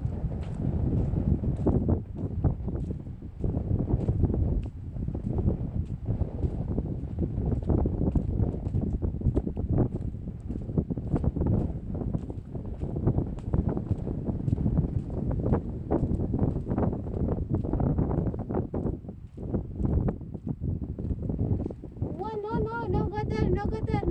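Wind buffeting the phone's microphone, a loud rumble that swells and dips throughout, with scattered small clicks and knocks.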